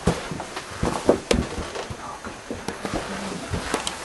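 Irregular knocks, scuffs and clicks of people moving about on the rock floor of a cave, the loudest a little over a second in.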